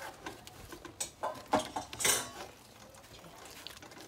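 Wooden spoon working thick cornmeal cou-cou in a stainless steel pot, stirred hard to keep it from going lumpy: a few scattered knocks and scrapes against the pot in the first half, then quieter stirring.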